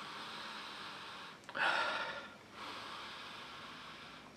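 A man sniffing deeply at a glass of beer, drawing long breaths through the nose with his nose in the glass; the loudest breath comes about one and a half seconds in.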